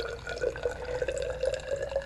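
6-molar hydrochloric acid poured in a thin stream from a plastic bottle into a glass test tube. It makes a steady, faintly wavering ringing note over a light trickle.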